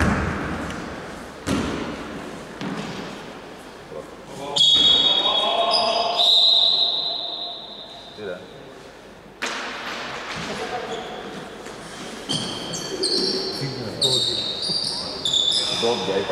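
Basketball shoes squeaking on a hardwood gym floor, short high squeaks in clusters, with a few sharp knocks from the ball and players' voices echoing in the hall.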